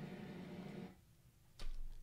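Steady HVAC-type background noise from a test noise source, heard faintly through a close-talking Shure SM7B microphone that attenuates it; it stops abruptly about a second in. A short noise follows near the end.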